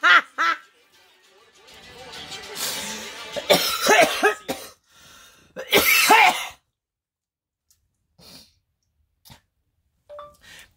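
A woman laughing hard in several bursts, the last and loudest about six seconds in, then falling quiet.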